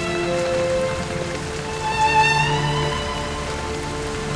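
Steady rain falling, with slow background music of long held notes over it.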